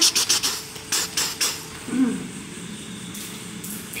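Handling noise of a small plastic red-dot finderscope held in the hand: a quick run of small clicks and rattles at the start, a few more about a second in and near the end, with a brief low voice sound about halfway.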